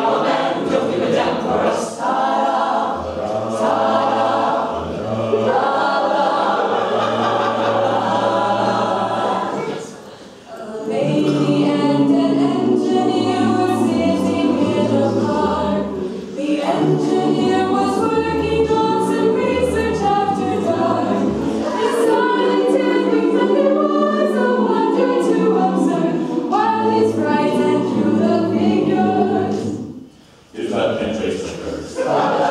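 Mixed-voice a cappella group singing together, men and women, with no instruments. The singing stops briefly about ten seconds in, and breaks off right at the end.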